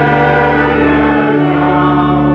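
Congregation singing a hymn with organ accompaniment, holding long sustained notes and chords.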